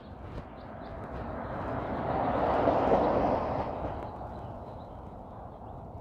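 A vehicle passing on the street, its road noise swelling to a peak about three seconds in and then fading away.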